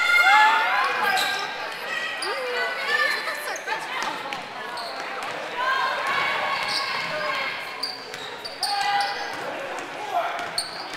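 A basketball being dribbled on a hardwood gym floor amid the shouting voices of players and spectators, echoing in the large hall.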